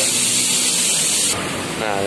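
A steady, high hiss of air from a compressed-air line in a tyre shop, stopping suddenly about one and a third seconds in.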